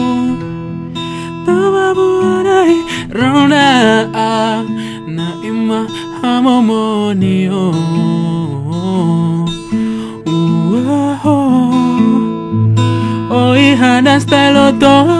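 A man singing a melody live to his own acoustic guitar accompaniment.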